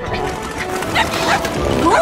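A cartoon dog-car character giving a couple of short barks over background music.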